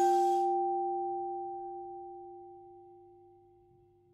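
A single low note from a paper-strip music box's steel comb, plucked right at the start and left to ring on its own, with a higher tone above it, slowly fading away over about four seconds.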